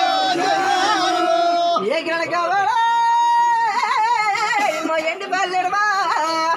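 Singing in long held notes with a wavering, sliding pitch, loud and unbroken, with one long note held near the middle.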